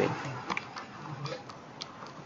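A few faint, irregularly spaced clicks over low room noise.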